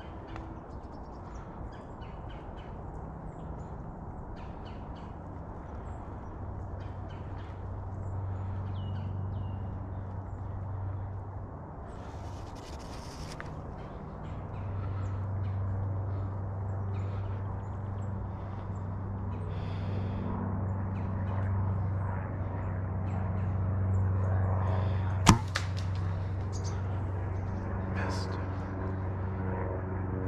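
A single sharp snap of a compound bow being shot, about 25 seconds in, the loudest sound here. Around it are small rustles and clicks of leaves and brush over a low steady drone that slowly grows louder.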